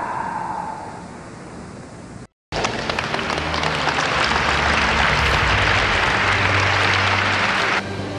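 Audience clapping in a large hall, starting after a brief dropout about two and a half seconds in and cutting off abruptly near the end, over a steady low hum. Before it, music fades out.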